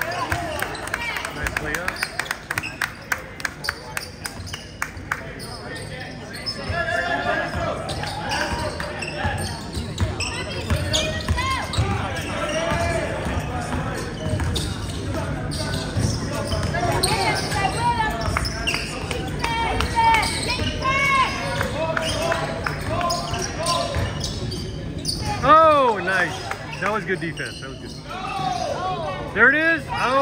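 A basketball being dribbled on a hardwood gym floor, with a quick run of bounces in the first few seconds, while players and spectators call out. Sneakers squeak on the floor throughout, and the loudest squeaks come twice near the end.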